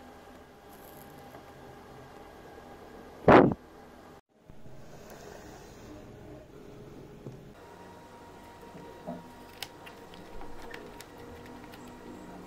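Quiet bench room tone with faint clicks and ticks from hands handling wires and a plastic housing, and one short, loud knock about three seconds in.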